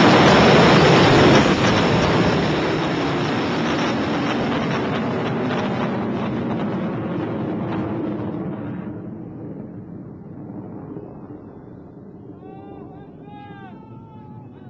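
Rocket motor's rushing exhaust noise as the Kavoshgar rocket climbs away after liftoff, loud at first and fading steadily as it recedes into the sky. A person's voice comes in near the end.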